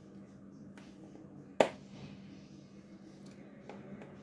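Handling of a giant Pringles can's plastic lid while it is being opened with a knife: one sharp click about one and a half seconds in, with a few faint ticks, over a faint steady hum.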